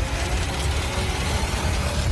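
A dense, steady low rumble from an action-trailer sound mix, with a few faint held tones above it.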